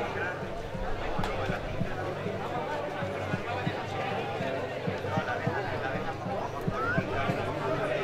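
Crowd chatter at an outdoor street market: many people talking at once, with footsteps on paving tapping steadily underneath.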